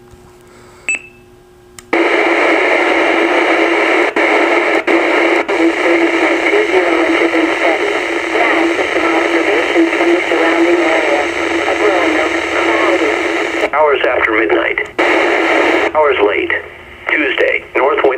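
A NOAA weather radio broadcast received on a Maxon SM-4150 VHF mobile radio and heard through its speaker: a narrow, tinny voice reading a wind forecast in knots over light static, starting abruptly about two seconds in after a short beep. Near the end it breaks off and comes back twice as the radio steps between weather channels.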